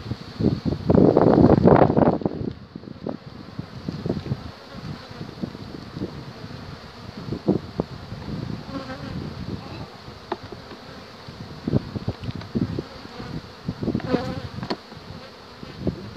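Honeybees buzzing around an opened hive, with scattered knocks and clicks from frames and hive boxes being handled. A loud rushing noise fills the first couple of seconds.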